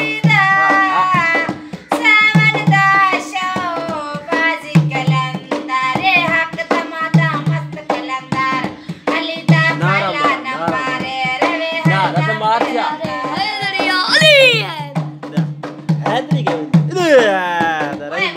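A woman singing a folk song while beating a dholki, a two-headed barrel hand drum, with her hands. A deep bass stroke, often doubled, comes about every two and a half seconds, with lighter slaps between. The voice makes sweeping upward and downward slides in the last few seconds.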